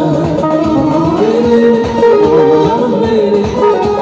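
Live Azerbaijani wedding-band music led by a synthesizer, with a wavering, ornamented melody over a steady drum beat.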